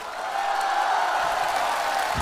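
Studio audience laughing and applauding, swelling about half a second in.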